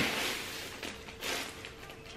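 Crinkle-cut shredded paper filler rustling as hands dig through a cardboard gift box, in short rushes near the start and again just past a second in.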